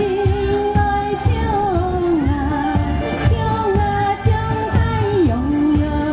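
A woman singing a slow melody into a microphone over musical accompaniment with a steady beat. She holds long notes with a slight waver and drops to a lower note about five seconds in.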